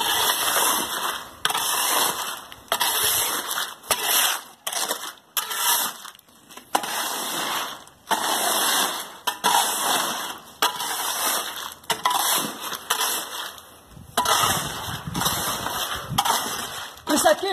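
Fresh concrete being compacted around a column's rebar cage by shaking and stamping it down, heard as irregular bursts of wet noise about a second apart. This is the hand vibrating of the concrete that settles the stone and brings the cement paste up.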